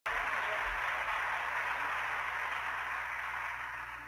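Audience applauding steadily, then trailing off sharply near the end.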